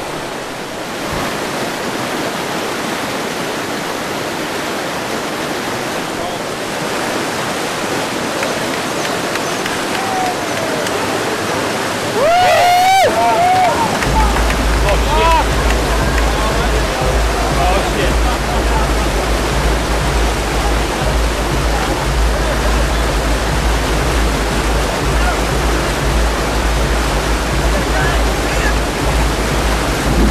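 Whitewater rushing through a grade 3 river rapid, a steady noise. Around twelve seconds in a few distant voices call out over it, and from about fourteen seconds a deep low rumble joins the water sound.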